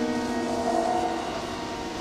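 Acoustic piano in jazz accompaniment, a held chord ringing and slowly fading, with one soft note added about a second in.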